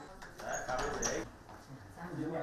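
Faint, indistinct murmur of voices from people gathered in a room, with two short high chirps about half a second and a second in.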